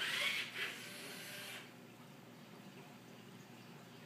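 Robosapien V2 toy robot's small gear motors whirring as it moves its arm and body, louder for the first half second and dying away about a second and a half in, leaving faint room tone.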